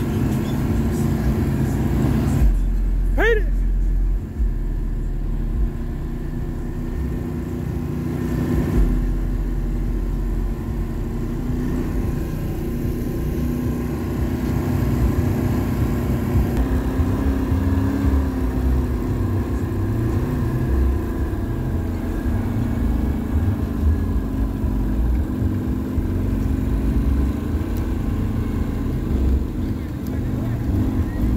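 An ATV's engine runs steadily while riding, with low rumble from wind on the microphone. About three seconds in there is a short, rising whistle.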